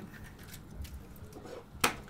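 Quiet handling at a work counter, then one sharp crack just before the end: an egg knocked to break its shell.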